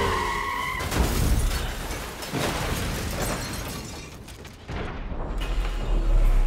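Film action-scene mix: a car skidding and crashing, with heavy impacts and breaking glass, under dramatic orchestral score. The score rises to a loud low swell near the end.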